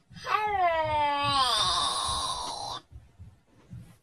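A high-pitched cartoon voice giving one long, drawn-out wail of about two and a half seconds, its pitch sagging slightly toward the end.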